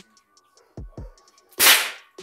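Background electronic hip-hop beat: deep kick drums that drop in pitch and short hi-hat ticks. A loud, sharp whip-crack-like hit lands about one and a half seconds in.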